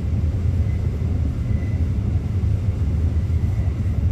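Steady low rumble of a long, empty coal train rolling past on the line.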